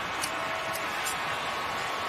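Steady stadium crowd noise under a football broadcast, an even hiss with no single voice standing out.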